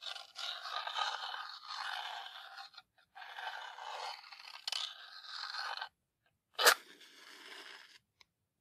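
A wooden safety match head rubbed slowly along the striker strip of a cardboard matchbox in two long scratching passes, then struck sharply about six and a half seconds in. It ignites with a short, loud scrape and flares with a quieter hiss.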